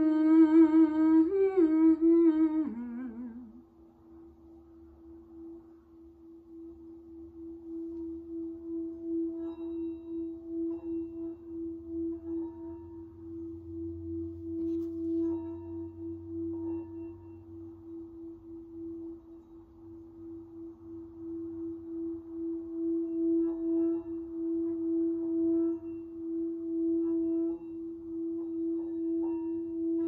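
Singing bowl rimmed with a mallet, holding one steady ringing tone that swells and fades in slow pulses. A held sung note with vibrato, stepping in pitch once, ends about three seconds in.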